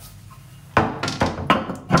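Ceramic toilet cistern lid being set back down on the cistern: about four sharp clunks of porcelain on porcelain over the second half, as the lid is seated.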